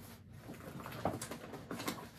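Rustling with several short, light clicks and knocks as things are handled and moved about while someone rummages for a bag.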